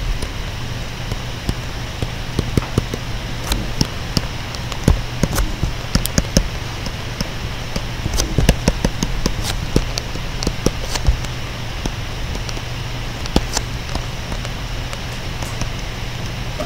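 Stylus tapping and scratching on a tablet screen during handwriting: irregular light clicks over a steady background hiss and low hum.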